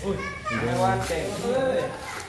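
Several voices talking at once, children's among them, in background chatter.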